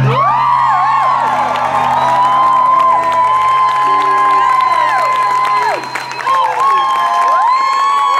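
A concert crowd cheering and whooping, with high held whistles that rise and fall, as the acoustic guitar's last chord rings out and dies away about halfway through.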